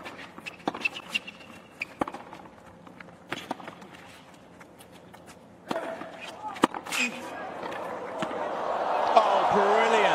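Tennis ball struck back and forth in a rally, sharp racquet hits about a second or more apart starting with the serve. Crowd noise swells over the last few seconds as the point reaches its climax.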